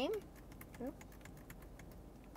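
Steering-wheel control buttons of a 2021 Subaru Forester being pressed repeatedly: a quick, irregular run of light plastic clicks as the toggle scrolls through letters on the multi-function display.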